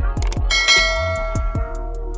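Electronic background music with a steady beat and regular high ticks. About half a second in, a bright bell chime rings out over the music and fades over about a second: the notification-bell sound effect of a subscribe-button animation.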